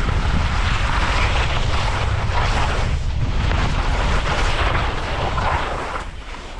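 Wind rushing over an action camera's microphone at speed on a ski run, with a low rumble, over the hiss and scrape of edges on chopped spring snow that rises and falls with the turns.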